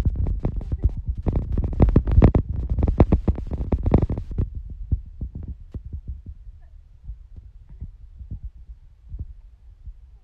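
Muffled thumping and rumbling from a hand rubbing over a phone's microphone, dense and loud for the first four seconds or so, then thinning to scattered knocks.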